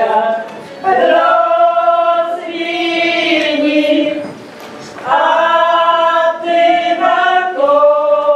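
Mixed women's and men's voices of a village folk group singing a traditional Polish wedding song together, in two long drawn-out phrases with a short breath about halfway.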